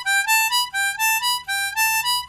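C diatonic harmonica played in second position: a triplet of six blow, six draw, seven draw (G, A, B), three notes stepping upward, repeated several times in a steady rhythm.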